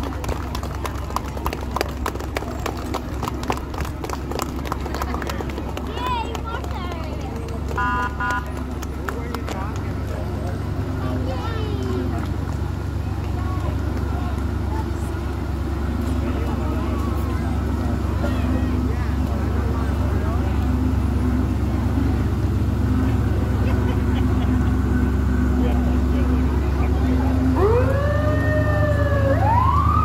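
Fire trucks' engines rumbling steadily, growing louder as the trucks approach, over crowd voices. Near the end a fire siren starts, giving a few short rising-and-falling wails.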